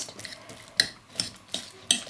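A fork mashing avocado in a bowl, its tines knocking against the bowl in a few irregular clicks.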